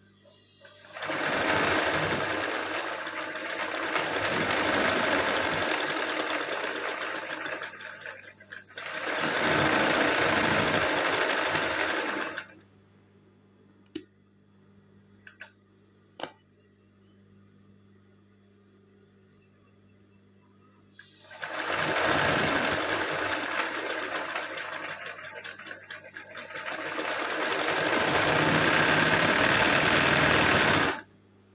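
Electric sewing machine stitching dense satin-stitch fill into small triangle motifs, run in bursts under hand-guided fabric. It runs for about seven seconds, pauses briefly, runs another three seconds and stops. A few light clicks follow in the lull, then it runs again for the last nine seconds.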